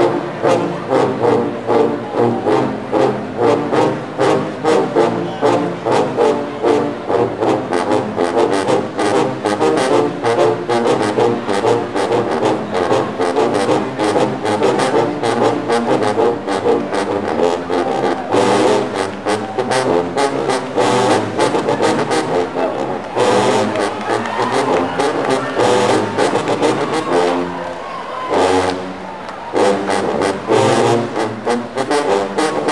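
Marching-band sousaphone section playing a loud, punchy, rhythmic riff together, with a short quieter dip near the end.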